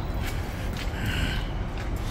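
Shopping-mall background noise: a steady low rumble with faint, indistinct clatter over it.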